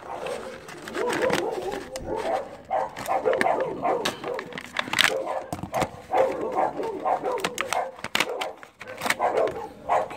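Plastic blister packaging of a JB Weld epoxy kit crinkling and clicking as it is pulled open by hand, over repeated short pitched calls in the background, thickest in the first half.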